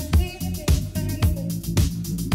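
Dance music played from a DJ's decks: a steady four-on-the-floor beat with a kick drum about twice a second, a bass line and a held melodic line above.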